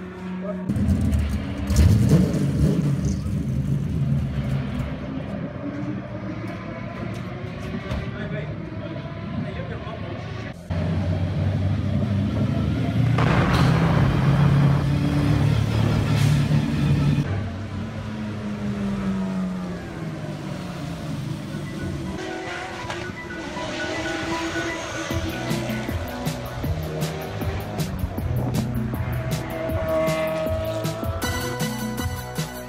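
Racing car engine running and revving up, with background music that takes over in the second half.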